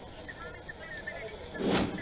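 A short whoosh transition effect near the end, swelling and fading within about a third of a second, over low background hiss and a faint voice.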